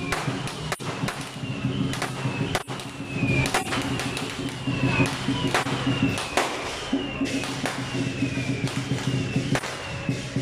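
Lion dance percussion band playing: a big drum with crashing cymbals and a steady beat, full of sharp strikes. A high ringing note that drops in pitch repeats about once a second.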